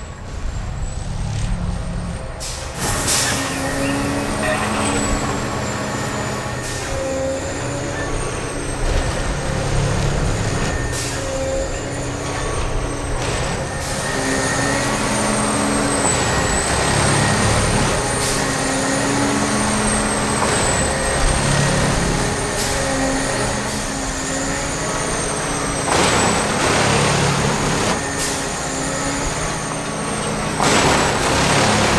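Track-tamping machine working: a steady diesel-hydraulic drone with a wavering high whine, as the tamping units cycle. Short air-release hisses come every few seconds.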